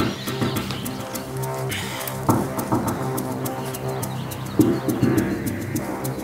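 Background music from the show's score: sustained low tones under a steady ticking beat.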